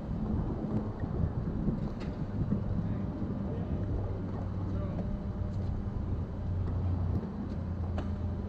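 Steady low hum of an idling vehicle engine under constant outdoor background noise.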